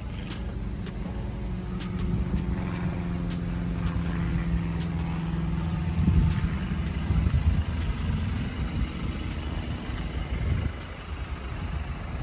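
Lifted Jeep Wrangler's engine running at low revs as it crawls up and over a steep dirt mound. The engine note gets louder about halfway through, then drops off shortly before the end.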